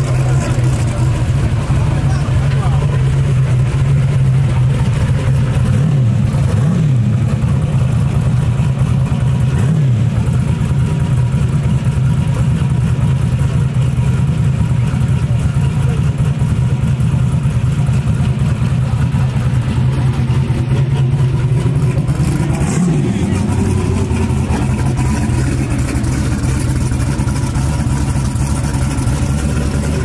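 Turbocharged first-generation Chevrolet Camaro drag car's engine idling steadily, blipped briefly a few times (about seven, ten and twenty-three seconds in).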